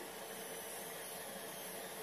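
Faint steady hiss of an aluminium pressure cooker heating on a gas burner, building pressure toward its whistles, with no whistle sounding yet.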